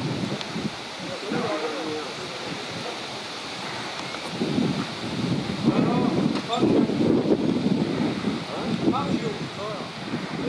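Wind noise on the microphone, with indistinct voices talking at intervals, louder in the second half.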